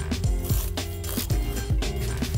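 Background music, with a knife rasping through a crisp baked suet-pastry crust on a wooden chopping board.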